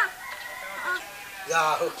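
A rooster crowing, with a loud call that falls in pitch near the end.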